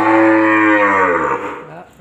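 A cream-coloured cow, just separated from her calf, gives one long, low moo that swells and then falls away, ending about a second and a half in.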